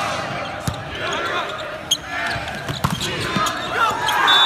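Volleyball rally in an indoor arena: several sharp smacks of the ball being hit, roughly a second apart, over a background of voices from the crowd and players.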